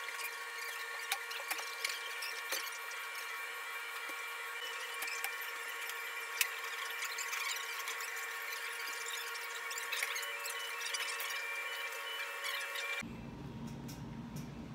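A steady high-pitched whine from kitchen equipment, made of several unchanging tones, with scattered small clicks and taps of work at the counter. It cuts off suddenly about a second before the end.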